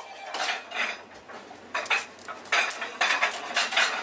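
A kitchen knife scraping and cutting at a whole skipjack tuna on a plastic cutting board: a series of short rasping strokes, coming thickest in the second half.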